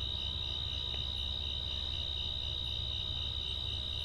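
Crickets trilling in a steady, unbroken high-pitched chorus, with a low steady hum underneath.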